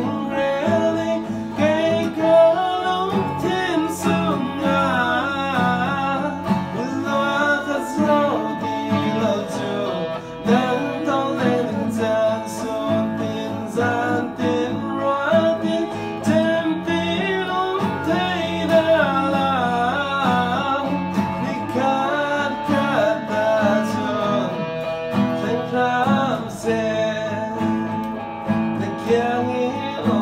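A song played live on guitars: a man singing over a strummed electro-acoustic guitar, with an electric guitar playing along.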